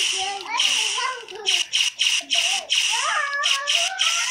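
Blaster sound effects played by a DFPlayer MP3 module through a small breadboard speaker, triggered in quick succession. They come as a run of sharp, hissy shots with gliding tones, starting suddenly.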